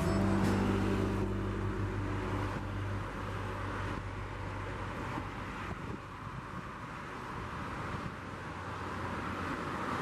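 Road traffic on a multi-lane highway: a steady wash of cars and trucks passing. For the first couple of seconds, music fades out over it.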